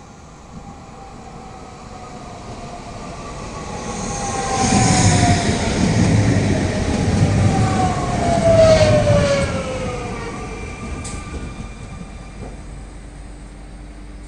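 Trenitalia regional electric train approaching and passing close by: the rumble of its wheels builds, peaks as it goes past about five to nine seconds in, then fades. Over the rumble an electric whine slides down in pitch as the train passes.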